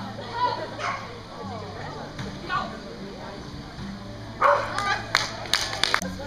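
Australian shepherd barking, with a burst of several sharp barks in the last second and a half, over background voices.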